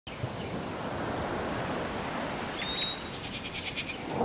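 Birds calling over a steady wash of outdoor noise: a short whistle about halfway through, then a held note and a quick run of repeated chirps near the end.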